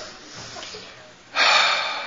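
A man's sharp, breathy exhale close to the microphone, beginning suddenly about one and a half seconds in and fading away.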